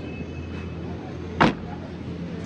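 A vehicle engine running with a steady low hum, and one sharp thump about a second and a half in.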